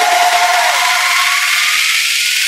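Electronic dance music at a build-up. The bass and beat drop out, leaving a bright wash of noise with a sweep that climbs steadily in pitch.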